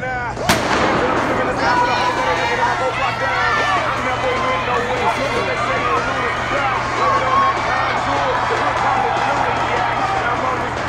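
A starting pistol fires once about half a second in, its crack echoing around the indoor arena, and then spectators cheer and shout through the race.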